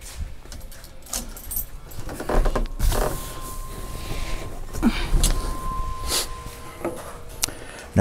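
Keys jangling, with scattered knocks and clicks from handling things around the truck. A faint steady high tone sounds for a few seconds in the middle.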